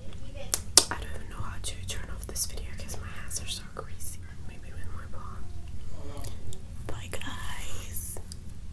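Close-miked whispering, with a few sharp wet smacks and clicks from fingers being licked in the first second.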